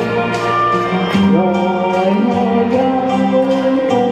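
A woman singing into a handheld microphone, amplified over a recorded backing track with a steady beat; she holds long notes, sliding up into a new one about a second in.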